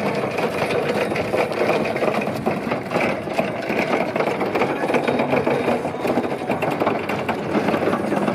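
Rocla electric reach truck driving, its electric drive motor whirring steadily while its hard wheels rattle over brick paving.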